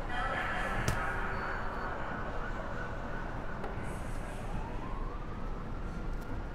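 Steady background noise with a low rumble, a sharp click about a second in, and a slow rising wail in the second half that levels off near the end.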